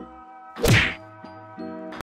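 A single short hit sound effect from an animated subscribe-button end screen, a little over half a second in, over steady background music.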